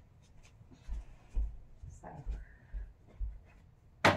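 Footsteps on the floor as a person walks across a small room: about five low thuds, a step every half second or so, with faint rustling. A sharp knock comes right at the end.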